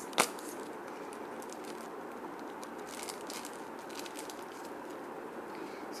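A sharp click just after the start, then faint crinkling of glitter-sheet cutouts being handled, over steady background hiss.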